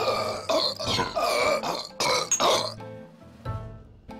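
A person belching loudly and at length, in several surges lasting almost three seconds, with soft music running underneath and carrying on after the belch stops.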